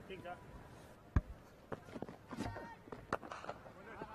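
Faint open-air cricket-ground ambience with scattered distant voices, broken by one sharp knock about a second in and a few lighter knocks later.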